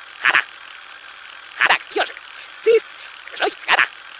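About six short, sharp vocal bursts, unevenly spaced and each cut off abruptly, over a low background hiss.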